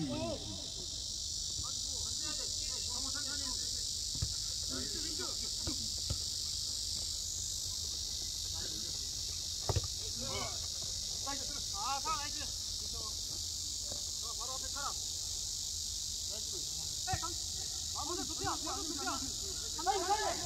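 A steady, high-pitched drone of insects, with distant shouts from players and a few sharp knocks, the clearest about halfway through.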